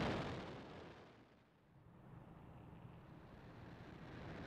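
Falcon 9 launch rumble from its first-stage Merlin engines fading away over the first second or so to near silence, followed by a faint low rumble.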